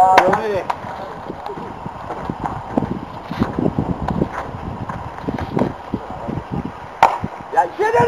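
Scattered light knocks and field noise, then a single sharp crack of a bat hitting the ball about seven seconds in, followed by players shouting.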